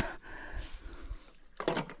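Faint handling noise as a small grass carp is lifted in a landing net, with a short grunt from a man near the end.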